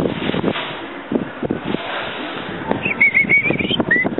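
A bird giving a high, wavering call for just under a second, about three seconds in, over a background of scattered clicks and rustling.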